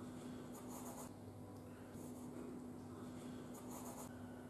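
Pen scratching on paper in short bursts of strokes, about half a second to a second in and again near the end, faint over a steady low room hum.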